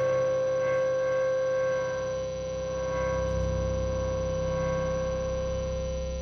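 Electric guitar and bass sustaining a droning chord through the amplifiers, a held ringing tone with steady overtones, like amp feedback. A deep low note swells in about two seconds in.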